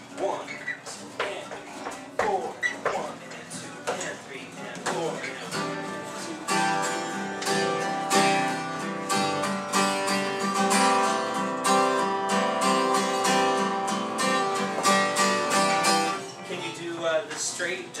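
Acoustic guitar strummed in a steady rhythm, some strokes struck louder than others to mark accents, as in an accent on beat one. The strumming begins about six seconds in and stops shortly before the end, with talking before it.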